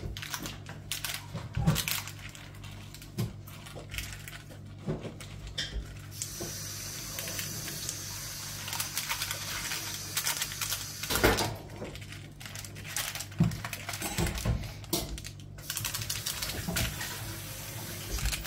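Metal fork scraping and tapping as it spreads and levels a crumbly almond turrón mixture in a paper-lined mold, knocking against a wooden spoon. The clicks and scrapes come irregularly, over a steady low hum.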